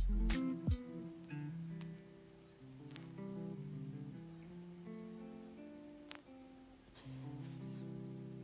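Soft background music of acoustic guitar picking, slow notes changing in steps, with a few faint clicks over it.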